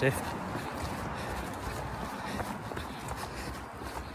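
Footfalls of a runner jogging on a woodland trail, heard with the steady rustle and handling noise of a phone carried in the hand while running.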